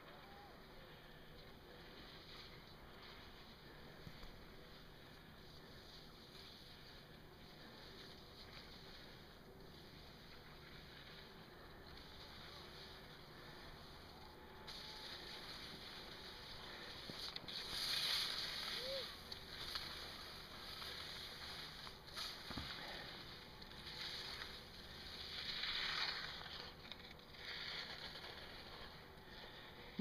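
Wind rushing over the microphone: faint at first, stronger from about halfway, with louder gusts swelling and fading twice.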